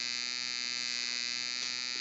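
Steady electrical hum and buzz with a high whine riding on top, unchanging throughout: electrical noise in the recording chain.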